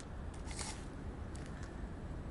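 A few faint clicks of beach stones knocking together, over a steady low outdoor rumble.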